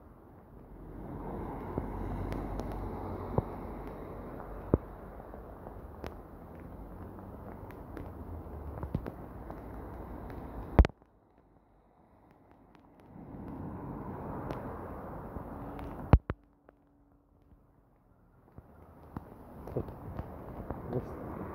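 Rushing water noise on a flooded street in heavy rain, swelling and fading, with scattered sharp clicks and knocks. The sound drops almost to nothing twice, briefly, after the two loudest clicks.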